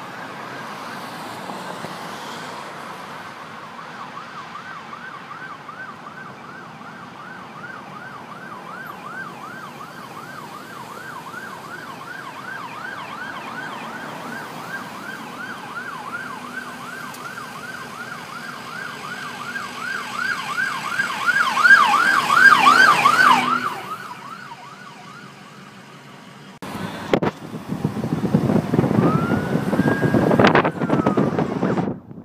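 Fire department command car's electronic siren on a fast yelp, growing louder as it approaches, loudest about three quarters of the way through, then fading quickly as it passes. Loud rushing noise follows near the end.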